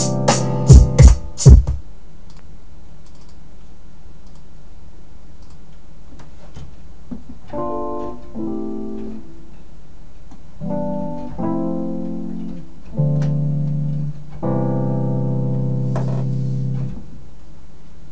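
A few sharp drum-beat hits in the first two seconds, then the beat stops. From about halfway through, piano-like keyboard chords from FL Studio, played on an MPK49 MIDI keyboard, come in as several chords, each held for a second or more.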